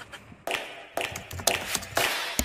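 A handful of sharp taps and clicks over faint background noise, coming closer together toward the end.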